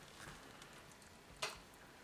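Mostly quiet, with one short sharp click about one and a half seconds in and a few fainter ticks: a slotted metal spatula knocking against a glass baking dish as it scoops into the baked rice.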